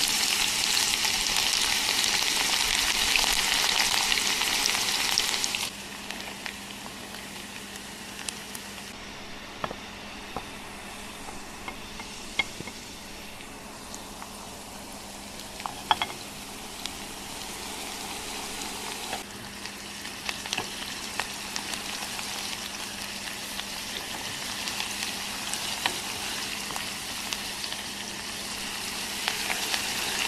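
Diced onions frying in hot oil in a pot: a loud sizzle as they go in, dropping after about six seconds to a quieter steady sizzle with scattered clicks of utensils on the pot. The sizzle swells again toward the end as chopped parsley fries with the onions.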